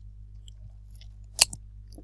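Low steady hum from the recording, with a single short sharp click about one and a half seconds in.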